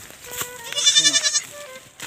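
A goat bleats once about a second in, a short, high, quavering call.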